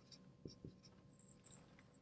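Near silence, with faint squeaks of a dry-erase marker on a whiteboard and two soft taps about half a second in.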